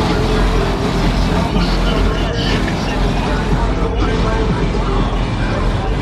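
A car engine running with a steady low rumble, with crowd voices mixed in.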